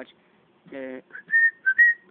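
A person whistling about four short, high notes in the second half.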